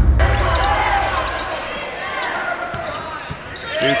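Basketball game arena sound: crowd voices echoing in a large gym, with a ball being dribbled on the hardwood floor. It opens on the tail of a transition whoosh.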